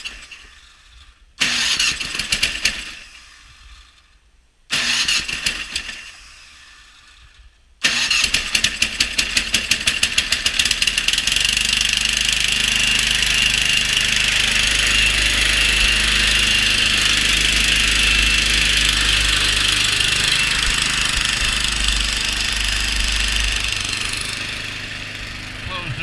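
Old walk-behind snowblower engine being started: it fires briefly and dies away twice, then catches about eight seconds in and runs steadily. The sound eases a little near the end.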